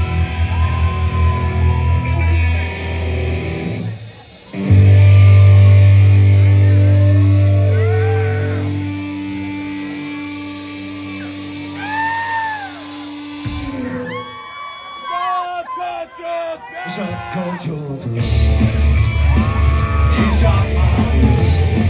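Live psychobilly band with coffin-shaped upright bass, electric guitar and drums. The band plays, breaks off briefly about four seconds in, then hits a long held chord that rings out with shouted vocals over it and stops abruptly after about nine seconds. A few seconds of shouting voices follow, and the band comes back in at full tilt near the end.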